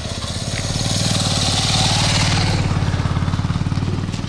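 A motorcycle riding past. Its engine grows louder to a peak about halfway through, then fades as it goes by.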